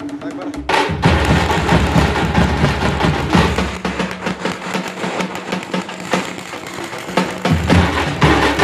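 Tamate frame drums beaten in a fast, loud folk rhythm, the beat growing louder about a second in.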